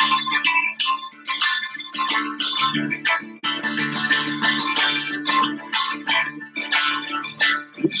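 Acoustic guitar strummed in a steady rhythm, several strokes a second over held chords: an instrumental passage between sung verses of a song.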